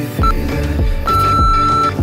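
Workout interval timer's countdown beeps: a short beep about a quarter second in, then one long beep from about a second in marking the end of the exercise interval. Electronic background music with a steady beat plays throughout.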